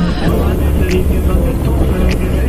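Steady low rumble of a moving vehicle, with engine, tyre and wind noise coming in through an open window.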